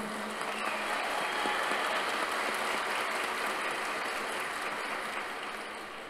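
A large audience applauding in a hall, the clapping swelling over the first two seconds and dying away near the end.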